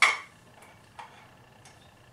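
A sharp knock with a brief ring right at the start, then a faint tick about a second in, as a black plastic tub drain fitting is handled.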